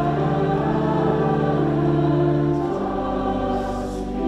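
Choir and congregation singing with organ accompaniment, in slow sustained chords that change about two-thirds of the way through.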